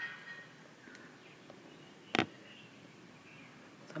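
Quiet room tone broken by a single sharp tap on a tablet's glass screen about two seconds in.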